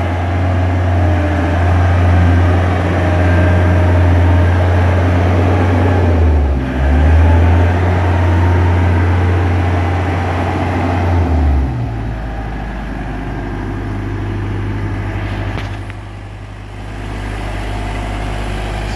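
JLG 600A articulating boom lift's engine running while the machine drives. About twelve seconds in, the engine drops to a lower, quieter steady run.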